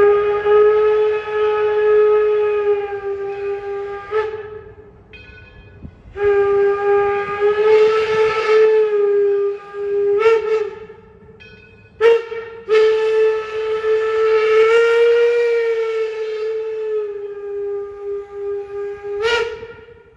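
Steam locomotive No. 7's whistle blowing on one steady note: three long blasts of roughly four, four and six seconds, with short toots in the gaps and one more toot near the end.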